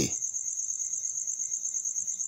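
An insect trilling steadily: one high-pitched tone made of fast, even pulses.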